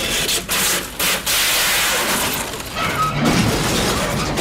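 Mexican banda music in an instrumental passage with no singing, its brass and crash cymbals filling the sound. There are two short breaks, about half a second and a second in.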